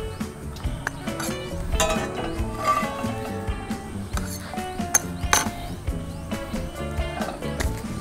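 Background music, with a few sharp clicks and taps of metal cooking utensils against the pan and board.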